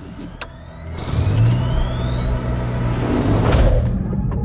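A push-button click, then an SUV engine starting and running with a steady low hum. A rising synthetic whoosh climbs over it.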